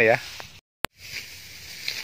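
A man's voice finishing a short phrase, then an edit cut: a moment of dead silence broken by a single sharp click. After it comes a faint, steady background hiss with no clear source.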